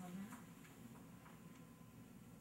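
Near silence: room tone, with a faint murmur of a voice at the very start and a few faint, irregularly spaced clicks.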